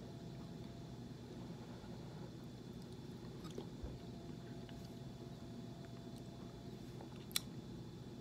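A person chewing a spoonful of canned beef chili: faint wet mouth sounds over a steady low room hum, with a single sharp click near the end.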